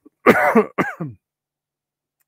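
A man clearing his throat: two harsh coughs, the first and louder about a quarter second in, the second shorter and falling in pitch about half a second later.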